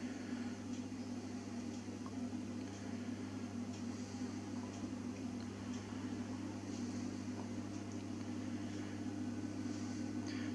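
Steady low electrical hum of a ferroresonant transformer fed from a Variac, running under load with a fainter buzz above the main hum tone.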